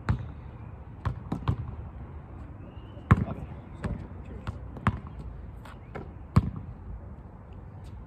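A basketball dribbled on an asphalt court: an uneven run of sharp bounces, the loudest about three seconds in and again past six seconds.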